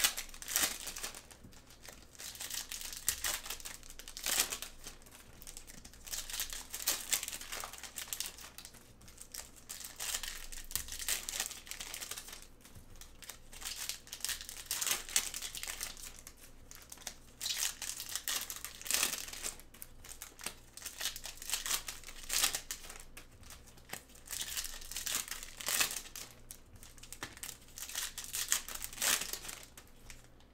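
Foil wrappers of Panini Optic basketball card packs being torn open and crinkled by gloved hands. The crinkling comes in irregular bursts, some every second or two.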